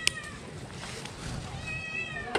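Puppy whining in thin, high-pitched whimpers, one fading out just after the start and another near the end, each sliding slightly downward. A sharp click comes just after the first whimper begins.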